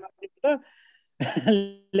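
A man's voice in short, broken fragments, with a cough-like noisy burst about a second in.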